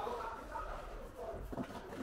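Indistinct voices talking in the background, too faint to make out words.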